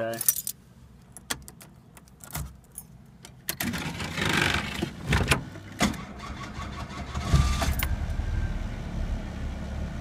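Keys jangling and clicking at the ignition of a 1989 Ford Escort. The starter cranks the four-cylinder engine for a couple of seconds, and it catches and settles into a steady idle with a brief swell in revs. The previous owner thought the starter was starting to go out.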